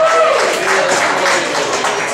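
Audience clapping over room noise, right after a man's voice trails off at the mic.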